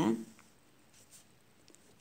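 Faint scratch of a pen drawing a straight line across paper.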